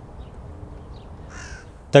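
A single short bird call about one and a half seconds in, over faint steady background noise.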